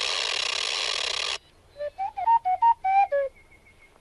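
A mechanical owl's whistling and wheezing, made as a film sound effect. A breathy wheeze cuts off about a second and a half in. Then comes a quick run of short whistled chirps that jump up and down in pitch, and a faint thin tone trails after them.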